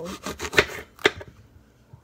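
Small kitchen knife cutting through a raw apple, with crisp crunching and two sharp snaps about half a second apart in the first second, then a lull.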